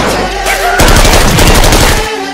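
Rapid automatic gunfire: a dense, fast run of shots, loudest from about a second in.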